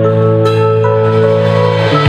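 Live band opening a song: held chords ringing over a steady low bass note, with a light stroke about half a second in.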